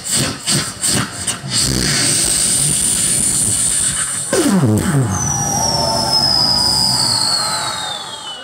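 A group of mimicry artists imitating a motor vehicle with their voices through stage microphones. It starts with a rapid sputter, settles into a steady engine-like drone, drops sharply in pitch about halfway through, and ends with a long falling whistle.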